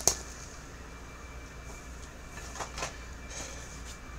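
Faint handling sounds as shopping items are moved about: a sharp click right at the start, then a few soft, short knocks and rustles later on, over a steady low hum.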